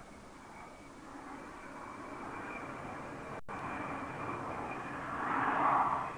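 Rushing air of a glider in flight, growing steadily louder as it comes close and peaking near the end, over a thin steady high whistle. The sound cuts out for a split second just past halfway.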